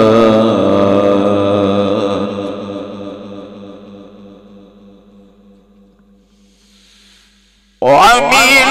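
Male Quran reciter's voice in the melodic mujawwad style, holding a long, wavering note that fades away over several seconds to near silence. Just before the end a loud voice cuts in abruptly.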